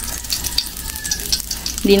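Hotdogs frying in oil in a wok, a steady sizzle with a crackle of small sharp pops, as a slotted spatula pushes them around the pan. They are cooked through and charred.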